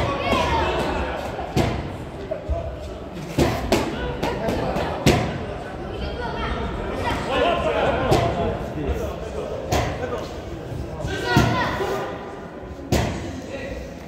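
Boxing gloves landing in an amateur bout: sharp thuds of punches and footwork on the ring canvas, several at irregular intervals, echoing in a large hall, with voices underneath.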